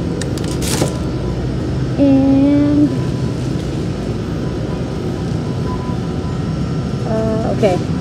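Steady low hum of supermarket refrigerated cases and ventilation, with a brief clatter less than a second in as a cardboard box is dropped into a wire shopping cart. A short held voice sound comes about two seconds in.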